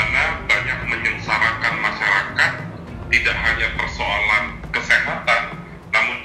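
A voice speaking Indonesian, reading a quote, over quiet background music.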